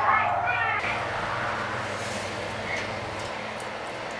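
A wordless, wavering cry that bends up and down in pitch and stops about a second in, followed by a steady hiss.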